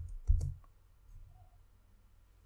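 Two keystrokes on a computer keyboard about a third of a second apart, as a formula is finished and entered, then quiet room tone.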